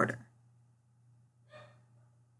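A short, quiet intake of breath about a second and a half in, over a faint steady low hum.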